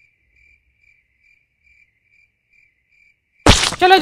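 Faint cricket chirping: a steady train of short, high chirps, about two to three a second, that stops after about three seconds. It is the stock cricket sound effect for an awkward silence.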